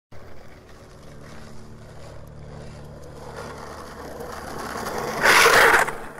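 Skateboard wheels rolling over asphalt, growing louder as the board comes closer, with a low steady hum underneath. Near the end comes a loud rough scraping burst lasting under a second.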